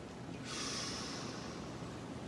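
A soft breath drawn in close to a handheld microphone: a faint hiss that swells about half a second in, then eases off.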